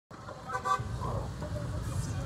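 Street traffic rumble with a short car horn toot about half a second in.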